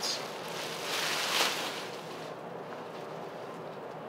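Thin clear plastic bag rustling and crinkling as a pair of trousers is pulled out of it, loudest about a second in and dying away after about two seconds to a low steady hiss.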